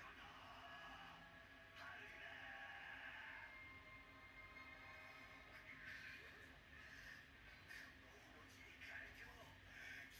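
Near silence, with faint, high shouted character voices from an anime episode playing quietly underneath.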